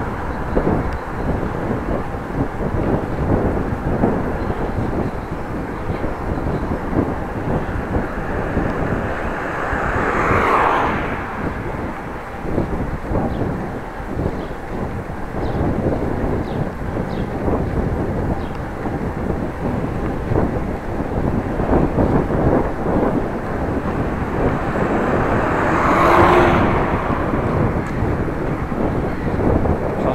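Wind rushing over a bike-mounted action camera's microphone while riding a bicycle along a street, with tyre and road noise underneath. The noise swells louder twice, about ten seconds in and again near the end.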